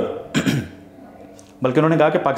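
A man clearing his throat once, a short rough burst about half a second in, between stretches of speech.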